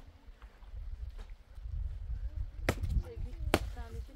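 Two sharp knocks on stone, about a second apart near the end, from work on a dry-stone wall being built, with voices talking around them.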